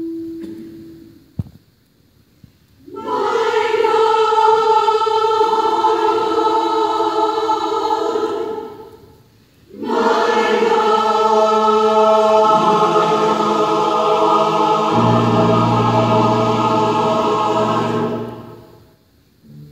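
Mixed choir singing two long sustained phrases with a short breath between them, low held notes joining partway through the second phrase.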